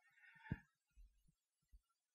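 Near silence with soft handling sounds of hands rolling and pressing baguette dough on a floured marble counter: a faint rustle, then one dull low thump about half a second in and two fainter thuds after it.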